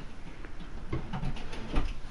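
Faint handling noise, with a few light clicks and knocks spread through it.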